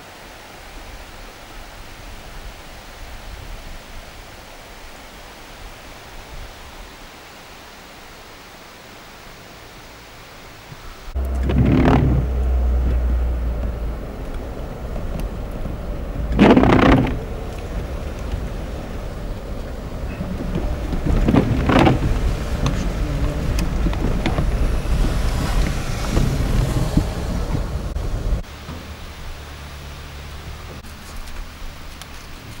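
Water running steadily across a washed-out asphalt road. About 11 seconds in, this gives way to much louder, low-heavy car cabin noise of a vehicle driving over a mud- and rock-strewn road, with three sharp louder noises, until it stops a couple of seconds before the end.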